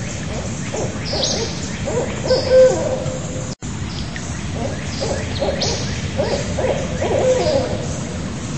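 Barred owl hooting in a rapid run of calls. The sound cuts out for an instant about three and a half seconds in, then the hooting resumes.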